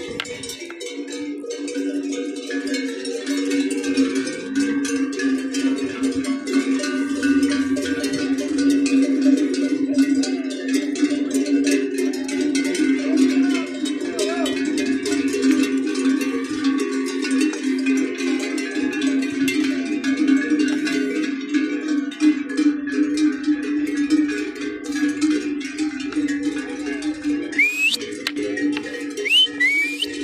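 Many cowbells on a moving herd of cattle clanking together without a break, a dense, steady jangle of ringing metal.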